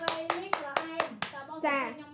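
Hand clapping: a quick, even run of claps, about four a second, that stops a little over a second in.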